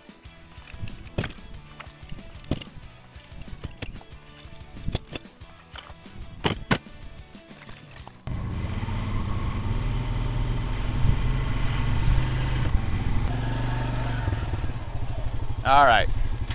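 Scattered light clicks and knocks of steel target stands being picked up and handled, then, after a sudden change about eight seconds in, an ATV engine running steadily with a low rumble of wind on the microphone.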